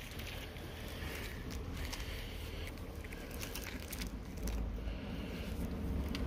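Faint rustling and handling noise, with a few light clicks, over a steady low rumble.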